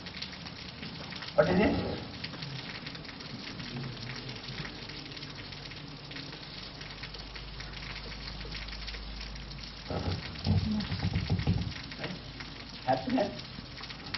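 Marker pen scratching across a whiteboard as a word is written, over a steady hiss of background noise, with a few short murmured vocal sounds near the start and again near the end.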